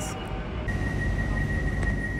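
Inside a suburban train carriage: a steady low rumble with a thin, steady high whine that comes in about half a second in.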